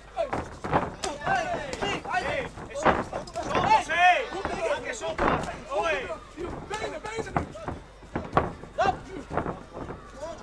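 Men shouting from ringside during a kickboxing bout, with a few sharp thuds of impacts mixed in.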